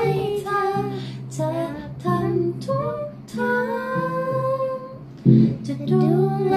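A young girl singing a Thai song over instrumental accompaniment, holding one long note past the middle before starting a new phrase near the end.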